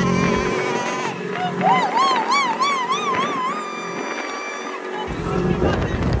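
A high-pitched voice holds a long note, then wavers rapidly up and down, over the steady low drone of a Polaris RZR side-by-side's engine. About five seconds in this gives way to wind buffeting the microphone.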